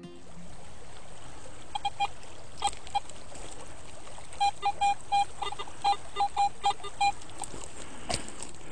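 Garrett AT Pro metal detector giving short, mid-pitched beeps as its coil is swept over gravel, each beep signalling metal under the coil. A few scattered beeps come first, then a quick irregular run of about a dozen in the second half, over a steady hiss.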